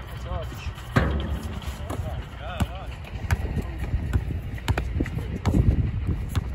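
A basketball bouncing and striking on an outdoor court: several sharp knocks, the loudest about a second in, with players calling out.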